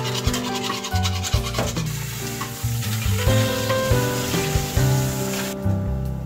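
Background music over Manila clams being scrubbed together by hand in a bowl of water: a rasping rub of shell on shell, densest in the first couple of seconds.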